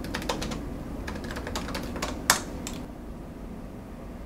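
Typing on a laptop keyboard: a quick, uneven run of key clicks with one louder key strike a little over two seconds in. The typing then stops for the last second or so.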